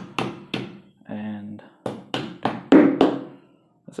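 A hammer striking a short PVC spacer pipe to drive a PVC sleeve into the centre hole of a cast cement weight plate: about seven sharp knocks, two early and then a quicker run of five in the second half. The last blows come as the sleeve is driven all the way in.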